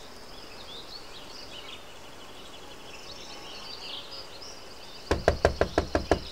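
Night-time outdoor ambience of high insect chirping. Near the end comes a quick, even run of about seven loud, sharp knocks in a little over a second.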